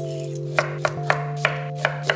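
Y-peeler scraping down a raw carrot in five quick, crisp strokes at an even pace, over steady background music.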